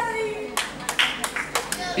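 Spectators clapping by hand: a run of sharp claps in quick succession, with a little crowd voice underneath.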